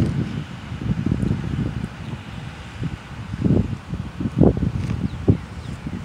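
Wind buffeting the microphone in irregular low rumbles, with leaves rustling; a person chewing a mouthful of burger close to the microphone.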